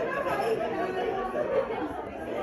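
Indistinct background chatter of several diners talking at once in a restaurant dining room.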